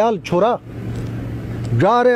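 A man's voice reciting poetry in Shina, breaking off for about a second in the middle; the pause is filled by a steady low hum and background noise.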